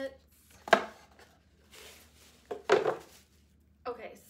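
Packaging being handled: a sharp knock just under a second in, then a short rustling scrape near three seconds as the cardboard gift box is handled and the fabric dust bag is lifted out.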